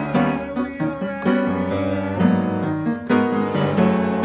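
Upright piano played with both hands: chords struck over held bass notes.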